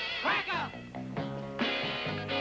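Instrumental surf-rock band playing, with electric guitars, bass, saxophone and drums. A short wavering, bending wail comes about a quarter second in, followed by a run of stepping bass notes.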